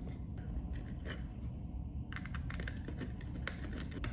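Light clicks and scratches of a short jumper wire being worked into the terminals of a plastic two-gang two-way wall switch, with a quick run of sharper clicks about halfway through.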